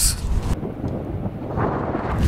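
Wind buffeting an outdoor microphone: a low rumble that grows stronger near the end.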